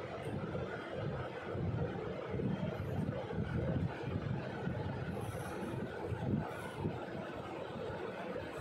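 Steady low rumbling background noise, wavering in level without any clear strokes or tones.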